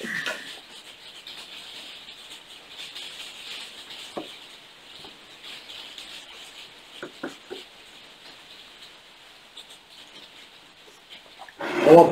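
A steady low hiss with a few faint, short mouth sounds, one about four seconds in and a small cluster around seven seconds, as whisky is sipped and held on the palate.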